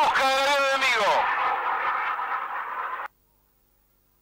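A man's voice trailing off about a second in, over a steady noisy background. Both cut off abruptly about three seconds in, leaving near silence.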